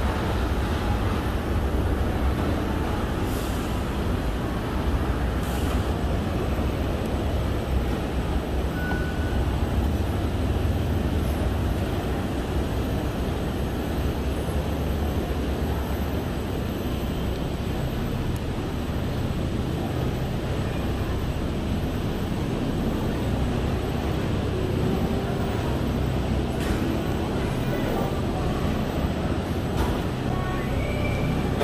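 Steady low mechanical rumble of running escalator and cable car station machinery, with a few faint clicks.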